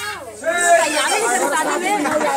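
Speech: a voice talking over background chatter, with no music playing.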